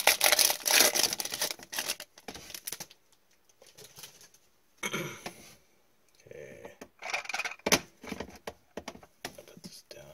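Foil trading-card pack crinkling as it is torn open, loud for the first few seconds, followed by quieter rustles and a sharp click as the cards are handled.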